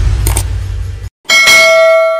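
End-screen sound effects: a loud, deep whooshing rumble that cuts off abruptly about a second in, followed after a brief gap by a bright bell ding that rings on and slowly fades, as the subscribe bell is clicked.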